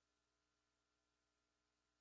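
Near silence: the sound drops to almost nothing between phrases of speech.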